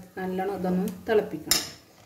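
A steel spoon knocks once against a nonstick pan of boiled tapioca chunks: a single sharp clink about one and a half seconds in.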